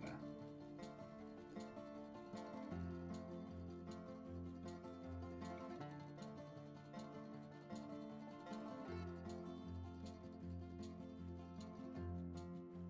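Quiet background music: plucked strings over a sustained bass, the chords changing every second or two.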